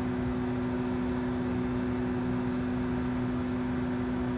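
Steady drone heard inside a double-decker bus: the bus's running gear gives a constant low hum over an even rumble, holding one pitch throughout.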